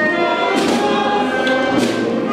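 Processional march played by a band: held chords over drum strokes about once a second.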